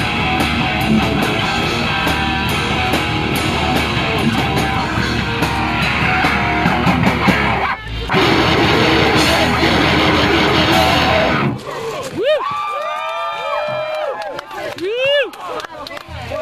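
Live heavy rock band playing loud with distorted electric guitar and drums, breaking off for an instant about eight seconds in and stopping at about eleven and a half seconds. After that, loose sliding pitched notes bend up and down.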